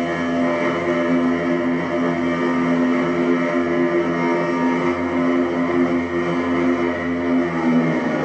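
Experimental electronic drone from effects pedals played through a small amplifier: a dense, steady layer of sustained tones. Just before the end, the lower tones drop away and the texture changes.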